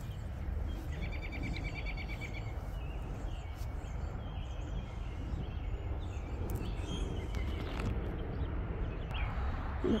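Outdoor garden ambience: a steady low rumble under small birds, with one bird's rapid trill of evenly repeated high notes about a second in and scattered faint chirps after.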